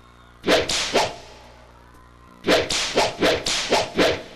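Sharp, cracking percussion hits from a live concert's music, ringing out in a big open-air space. Two hits about half a second apart come near the start, then a quick run of about four hits a second follows from halfway through.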